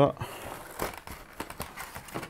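Cardboard box and packaging rustling and crinkling as the contents of a product box are handled, with a few irregular louder crackles.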